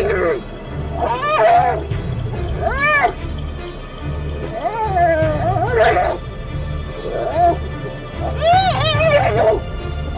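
Spotted hyenas crying out in a fight: a string of high, wavering calls that rise and fall, a second or two apart, the longest and most warbling near the end. Documentary music with a steady low pulse runs underneath.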